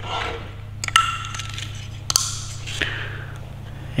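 Plastic TE Super Seal 1.0 connector being handled and pushed into its socket on a Holley Dominator ECU, with a sharp click and short ringing about a second in. Plastic rubbing and a smaller click follow near three seconds.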